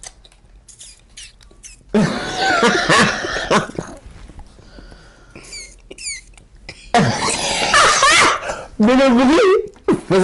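Bursts of hard laughter and coughing from people, in two loud fits, with a few short high squeaks between them and a brief voiced laugh near the end.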